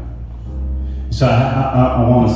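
Organ holding low sustained chords, with a man's chanted, half-sung voice coming in over it about a second in.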